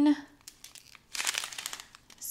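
Small clear plastic bags of resin diamond-painting drills crinkling as they are handled: a few faint ticks, then a longer rustle about a second in.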